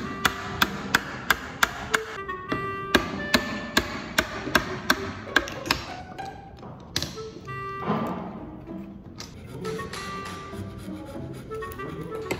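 Handmade wooden mallet striking a wood chisel that is cutting a joint in walnut: sharp knocks about three a second for the first half, then a few more scattered strikes, over background music.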